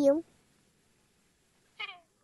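A young child's voice: a short word ends just after the start, then a pause, then a brief high-pitched syllable that falls in pitch near the end.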